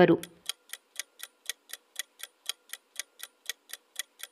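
Countdown-timer sound effect: steady clock ticking, about four ticks a second.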